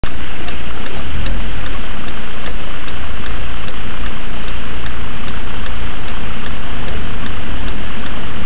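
Loud, steady hiss of a car's cabin noise through a dashcam's microphone while the car sits in slow traffic, with a low engine rumble underneath and a faint tick about two and a half times a second.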